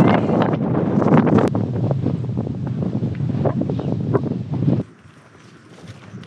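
Strong wind buffeting the microphone in a dense low rumble, cutting off suddenly about five seconds in to a much quieter outdoor background.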